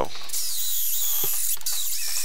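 Electric drill boring holes through a flattened copper pipe busbar held in a vise: a steady high-pitched whir of the motor and bit cutting the metal.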